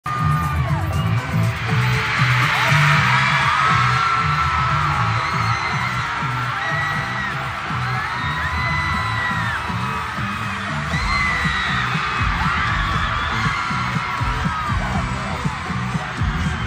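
A big arena crowd screaming and cheering: many high voices shrieking at once, with rising and falling screams standing out. Beneath it a low pulsing beat plays over the PA and grows stronger about two-thirds of the way through.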